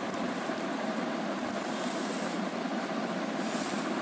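Steady background din of a busy cloth market shop, with two brief soft rustles of fabric being handled about one and a half and three and a half seconds in.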